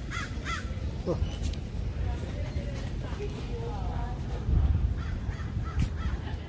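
Outdoor ambience with a few short cawing bird calls in the first second and faint distant voices, over a low rumble on the microphone that swells about four and a half seconds in.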